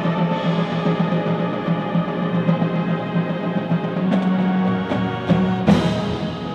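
Marching band playing sustained chords over a low held note, with percussion hits about four seconds in and twice more near the end, the last one the loudest and ringing on.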